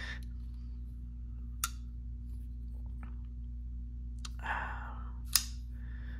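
A few sharp metallic clicks from handling a Shirogorov Quantum Gen 2 folding knife, spread out over a few seconds with the loudest near the end, over a steady low hum.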